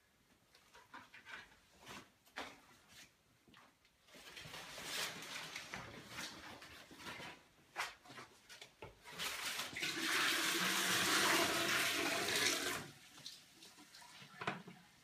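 A bucket of water poured into a toilet bowl to flush it by hand: a loud rush of water about two-thirds of the way in, lasting about three seconds, then stopping. The water is greywater pumped up from an indoor planter, used in place of a cistern flush.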